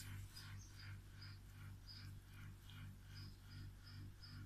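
Near silence with faint soft clicks and rustles, several a second, of a metal crochet hook working doubled cotton yarn, over a low steady hum.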